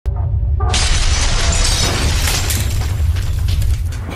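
Video intro sound effects: a deep boom and rumble running throughout, with a burst of shattering, crashing noise coming in just under a second in and repeated crash hits after it.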